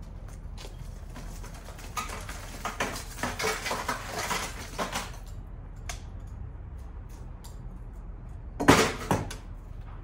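Handling noise from a cracked glass touch panel in a sheet-metal frame: a few seconds of rustling and clinking, then one loud sharp clatter of metal and glass about three-quarters of the way through, with a smaller knock just after.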